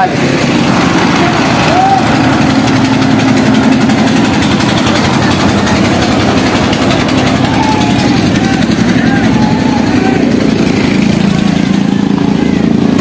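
A small engine runs steadily with an even, unbroken drone, and faint voices can be heard over it.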